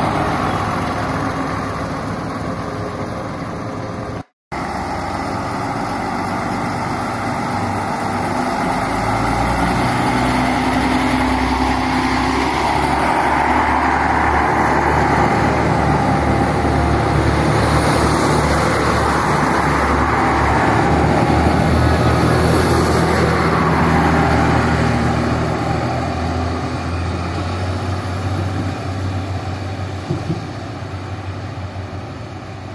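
SNCF TER Normandie regional multiple unit's engines running steadily at the platform, then growing louder from about ten seconds in as the train gets under way and passes. The sound eases off near the end as it draws away.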